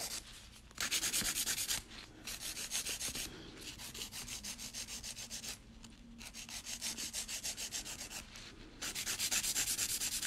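A hand nail file rasping across fingernails in quick back-and-forth strokes, several a second. The strokes come in runs of one to two seconds with short pauses between, as the nail surface is filed during prep for a gel fill.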